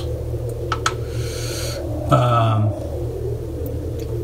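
A steady low hum runs under a camera being handled close inside a speaker cabinet: two sharp clicks just under a second in, then a short rustle. A little past halfway a man gives a brief murmured 'mm'.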